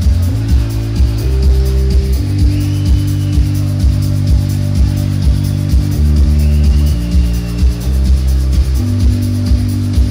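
Live rock band playing an instrumental passage, heard from within the audience: heavy, sustained bass chords that shift every second or two over a steady beat of about two pulses a second.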